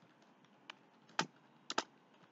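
Computer keyboard being typed on: a handful of separate, quiet keystrokes at an uneven pace.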